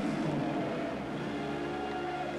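Basketball arena background noise: a steady murmur of the hall with faint sustained tones, like music from the PA, joining about a second in.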